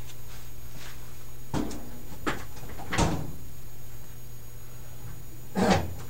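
A few separate sharp knocks and clicks, the loudest about three seconds in, over a steady low hum.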